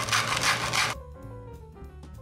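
Rhythmic rubbing or scraping strokes, about two a second, which cut off suddenly about a second in. Background music follows, with a run of falling notes.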